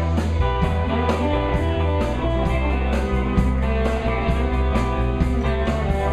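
Live rock band playing: electric guitars over a low bass line and drums, with a steady cymbal beat.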